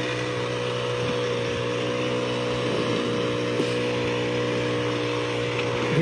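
Brush cutter engine running steadily at working speed while its weeder head churns through soil between crop rows.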